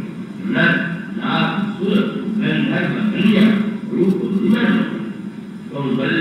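A man speaking: a continuous spoken discourse in Hindi, with no other sound standing out.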